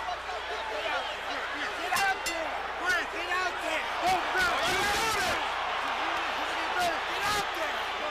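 Many voices shouting over one another, none of them clear, as men argue with a boxer who refuses to fight on. A few sharp knocks or slaps cut through, about two, three, five and seven seconds in.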